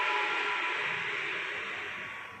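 A steady hiss with a faint whistle-like tone in it, slowly fading away toward the end.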